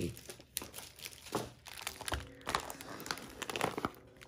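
Plastic packaging and zip bags crinkling as they are handled, in short irregular rustles.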